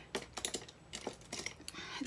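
Light, irregular clicks and clatter of makeup items being handled as a brush is reached for and picked up.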